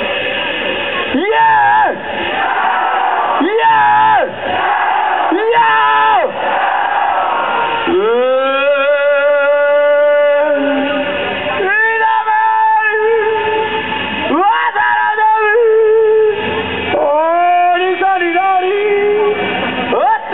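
A man's amplified voice yelling a series of long, wordless calls, about seven in all, each sliding up in pitch at its start; the longest is held steady for about three seconds near the middle.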